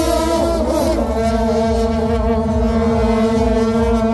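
Several shaojiao, long straight metal processional horns, blown together in a loud, sustained drone of held notes. The pitches waver and overlap as the horns come in, then settle into a steady chord about a second in.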